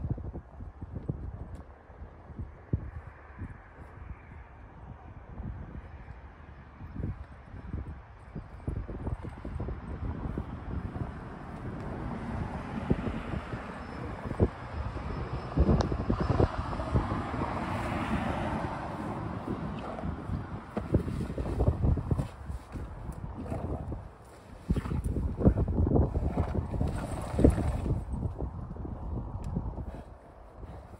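Wind buffeting the microphone in gusts, growing stronger after the first ten seconds or so, with several louder blasts near the end.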